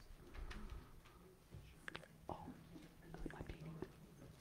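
Faint room sound of people moving about and whispering quietly, with a few soft clicks and knocks, the clearest about two seconds in and again near the end.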